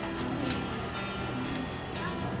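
Background music playing, with a few short sharp clicks over it.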